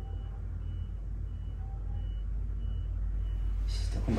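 Steady low hum with a faint high-pitched electronic beep repeating about every two-thirds of a second, and a short burst of rustling noise just before the end.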